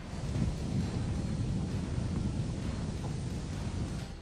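Steady wind noise buffeting the microphone of outdoor footage: an even, low rushing sound with no distinct events.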